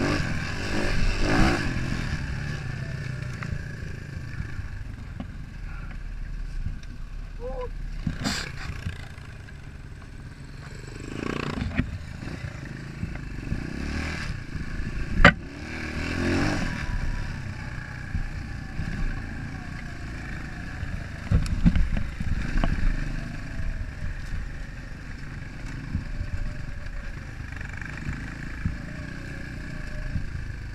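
Small single-cylinder enduro dirt bike ridden over a rough forest trail: the engine runs under changing throttle, its revs rising and falling. Sharp clatters and knocks come from the bike going over bumps, the loudest about fifteen seconds in.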